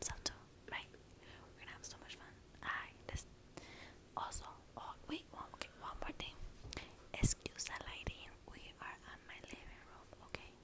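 A young woman whispering in short, breathy phrases close to a small microphone, with a few sharp clicks between them, the loudest about seven seconds in.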